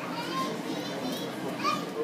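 Children's voices chattering and calling over a general crowd babble, with a short high-pitched squeal near the end.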